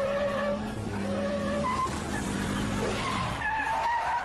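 Vehicle engines running steadily in a motorcycle-and-jeep chase, with tyre squeals cutting in several times.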